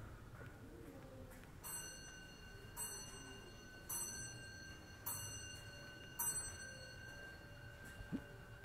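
A metal bell chime struck five times at an even pace, a little over a second apart. Each strike rings on, so the notes overlap into a sustained ringing.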